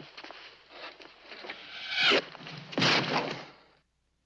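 Film sound effects of a heavy brass unicorn head being launched into a man: a quick falling whoosh about two seconds in, then a loud burst of noise just under a second later, cutting off suddenly.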